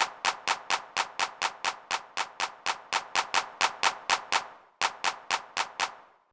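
Sampled electronic hand clap (FL Studio's VT_HandClap_2) repeating in a steady step-sequencer loop, about four claps a second, with a brief break near the middle. It is being panned across the stereo field under the triangular pan law, sounding quieter the further it is panned.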